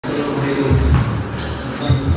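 A basketball bouncing on a gym floor, with a few short, high sneaker squeaks.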